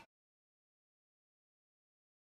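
Digital silence: the audio cuts off abruptly at the start and nothing follows.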